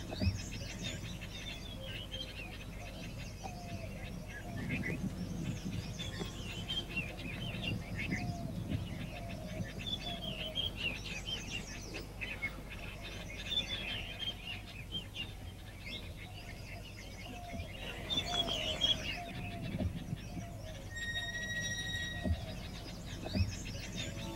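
Birds chirping and twittering in many short, repeated calls. Near the end comes a steady high tone lasting about two seconds.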